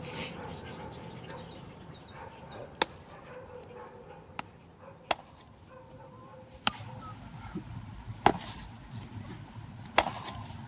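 Baseball smacking into a leather glove during a game of catch: about five sharp pops one to two seconds apart over a faint background.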